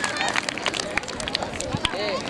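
Outdoor crowd babble: many children's voices chattering and calling out, with scattered sharp clicks and knocks.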